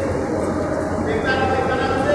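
Steady rushing background noise with a low hum, and a faint held tone that comes in a little past halfway.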